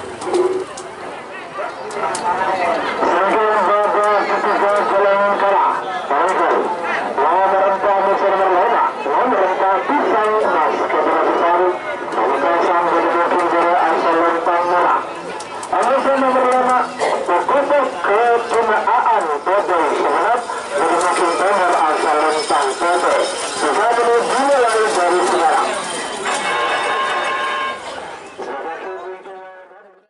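Loud voices shouting and talking almost without pause, with one short break about halfway through, fading out near the end.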